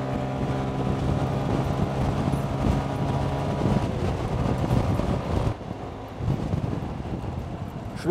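125 cc scooter engine running at a steady road speed, heard from on board with wind and tyre noise. About five and a half seconds in the engine note drops away and the sound goes quieter.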